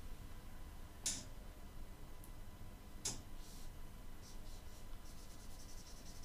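Whiteboard marker drawing short strokes on a whiteboard: a few faint, brief strokes, the clearest about a second in and about three seconds in, with lighter ones after.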